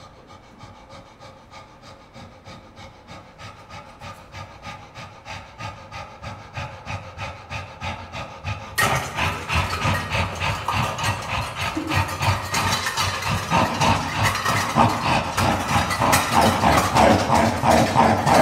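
Experimental noise music: a fast, evenly repeating noisy pulse that grows steadily louder and turns suddenly fuller and harsher about nine seconds in.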